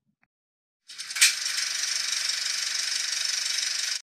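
Film projector starting with a click and then running with a steady, rapid mechanical clatter.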